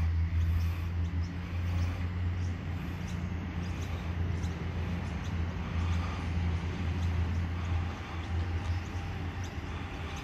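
Sydney Trains Tangara electric train approaching along the platform, a steady low hum that eases slightly near the end, with faint short bird chirps above it.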